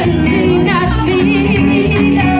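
A live band playing a song, with a singer holding wavering notes over bass, drums and accompaniment.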